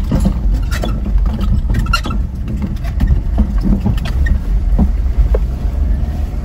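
Ford Endeavour SUV on the move, heard from inside the cabin: a steady low road and engine rumble with scattered small knocks and rattles.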